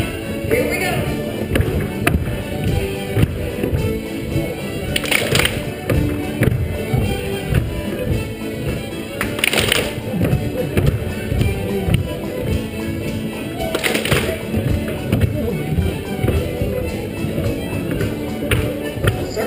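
A live contra dance band of fiddles, accordions, concertina, guitar and percussion plays a lively dance tune, over the tapping and shuffling of dancers' feet on a wooden floor. Three short hissing bursts come about four seconds apart.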